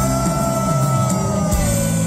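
A Turkish rock band playing live. A long held high note sinks slightly and fades out about one and a half seconds in, over a falling bass line, and then a steady full chord comes in.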